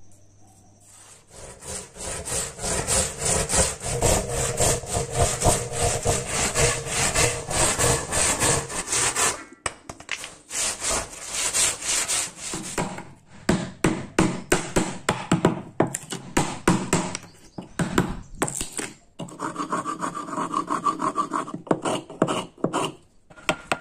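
Hand saw cutting through a block of wood in quick back-and-forth strokes, starting about a second in. The strokes come in shorter runs with gaps in the second half.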